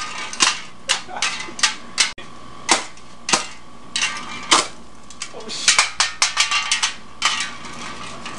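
Aluminium pop can on 110-volt household mains arcing: a string of sharp, irregular electrical cracks and snaps, coming thickest about six seconds in. The arcs burn holes through the can.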